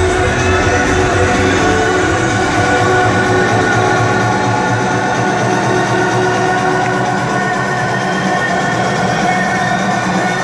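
Electronic dance music played loud over a club sound system during a live DJ set. About a second in the bass drops away, leaving sustained synth chords in a breakdown.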